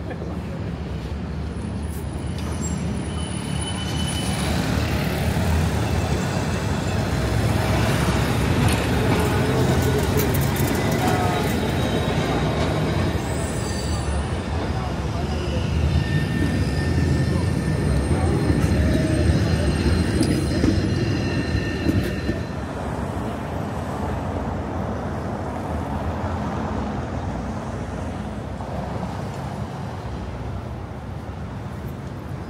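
Busy city street traffic with a tram passing close by. The rumble builds to its loudest through the middle and eases off toward the end.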